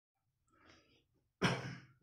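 A man breathing out heavily close to the microphone, one short burst about one and a half seconds in, after a faint rustle.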